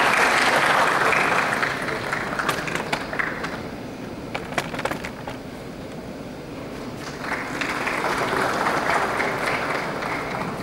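Audience applause, loudest at first and fading after about two seconds, then swelling into a second round about seven seconds in. A few sharp clicks stand out in the lull between.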